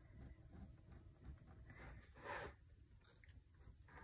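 Near silence: faint scratching of a gel pen drawing small scallops on planner paper, with a soft brief rustle about two and a half seconds in.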